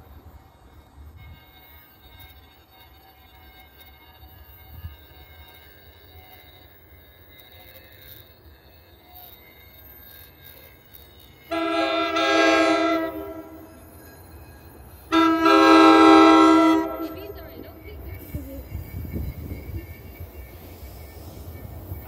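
An NJ Transit commuter train's horn sounds two long blasts, each about two seconds, a second and a half apart, the second a little louder. Under it and afterwards the low rumble of the approaching train grows toward the end.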